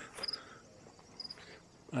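Crickets chirping in the grass: short high chirps about once a second.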